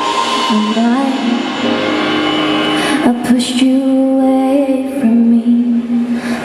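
Live pop-folk band playing: a woman's voice sings long held notes that slide into pitch, over electric guitars and drums, with a few sharp drum or cymbal hits in the second half.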